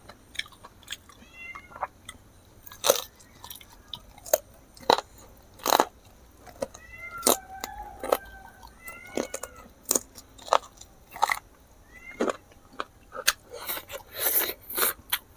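Close-miked eating sounds as a man chews buffalo meat curry and rice: wet chewing and sharp lip smacks, the loudest events. A cat mews about five times, each a short call that rises and falls.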